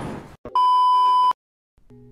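A single electronic bleep sound effect: one steady high tone lasting under a second, starting about half a second in and cutting off suddenly. It follows the fading tail of a noisy burst.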